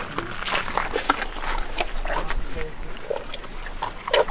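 Elephants making short snuffling, grunting noises at close range, over faint background voices and scattered small rustles and clicks.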